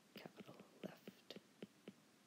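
Stylus tapping and scratching on a tablet's glass screen while handwriting letters: a string of faint, short clicks.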